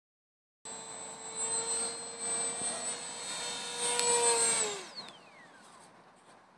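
HobbyKing Bixler RC plane's electric motor and pusher propeller whining at a steady high pitch, swelling louder and softer as the plane flies past, with one sharp click about four seconds in. Just before five seconds the whine winds steeply down in pitch as the motor spins down, and fades away.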